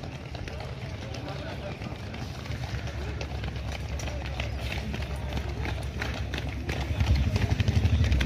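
Outdoor street sound of runners passing on asphalt: scattered footfalls and unclear voices over a low rumble. A vehicle engine's low pulsing rumble gets louder near the end.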